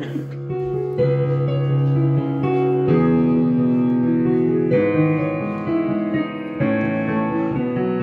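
Digital piano played with both hands: sustained chords, a new chord struck about every two seconds.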